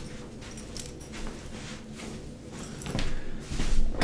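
A jacket being taken off: soft fabric rustling and handling noises in irregular strokes, a little louder about three seconds in.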